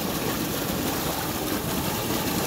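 Steady rush of water pouring from an inlet pipe into a concrete fish raceway, churning the surface.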